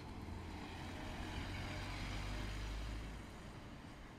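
A car passing at a road junction: its tyre and road noise swells to a peak about two to three seconds in and then fades, over a steady low hum.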